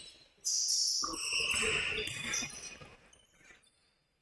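Court sound of a basketball game in a gym: sneakers squeaking on the floor and a basketball bouncing, fading out in the second half.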